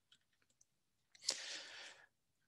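Near silence, then a little over a second in a sharp click followed by about half a second of soft breathy hiss.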